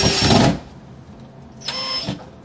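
A DeWalt cordless drill driving screws overhead into the ceiling. Its motor whine carries on from before and stops sharply about half a second in. A second short burst of the motor comes near the end.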